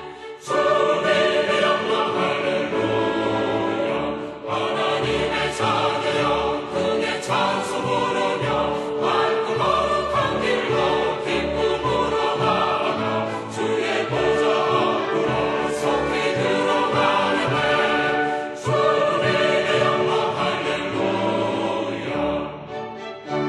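Choral music: a choir singing sustained, full-voiced lines with accompaniment, swelling in about half a second in.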